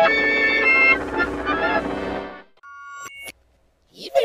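Studio-logo jingle music played as several effect-processed versions layered together, ending about two and a half seconds in. A few short high electronic tones follow, stepping up in pitch, then a brief silence.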